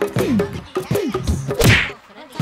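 Background music with a repeating falling figure, and a single loud whack of a fight hit sound effect about a second and a half in, after which the music cuts out briefly.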